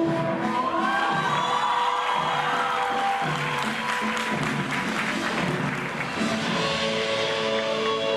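Recorded music playing while an audience cheers and claps over it, with the cheering strongest between about one and six seconds in.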